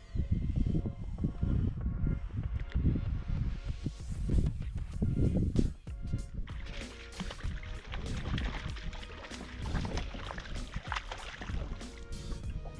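Background music over outdoor audio from a fishing boat. For the first half, low wind rumble buffets the microphone; from about six seconds in, a steady rustling, splashing noise with small clicks takes over.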